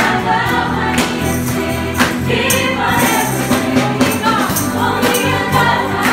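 A live worship band and group of singers performing a contemporary worship song: voices singing together over bass guitar and guitar, with a steady beat and jingling tambourines.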